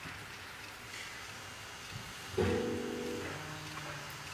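Quiet room sound as a band settles on stage, then, about two and a half seconds in, a single low instrument note sounds suddenly and holds, slowly fading, with a lower tone lingering after it.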